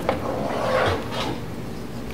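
Hard plastic car trim panel being handled: a click near the start, then plastic rubbing, and a light knock a little past the middle.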